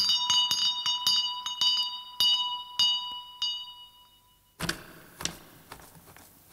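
A small servant's call bell on a spring bracket rung rapidly, about three strikes a second, its clear ringing tone carrying on between strikes until it stops a few seconds in and dies away. A softer rustle and a click follow near the end.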